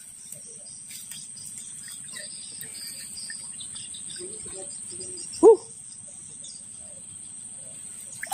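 Steady high-pitched insect drone, like crickets, with a faint low buzz beneath. About five and a half seconds in comes one short, loud voice-like sound.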